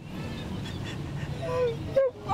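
A woman crying: breathy, broken sobbing over low street noise, with a short falling voiced cry near the end.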